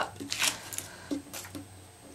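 Double-sided tape peeled up and hands rubbing over cardstock strips: several short papery rustles in the first second and a half, then quieter.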